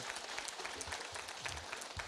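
Faint applause from a large audience.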